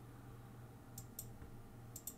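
Two faint clicks from the computer's keys or buttons, about a second in and a fifth of a second apart, over a low steady hum.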